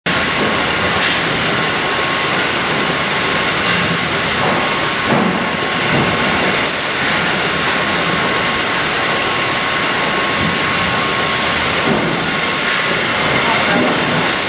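Steady din of a salmon fillet processing line, with conveyor machinery and a handheld Bettcher powered trimmer running and a thin steady whine over the noise.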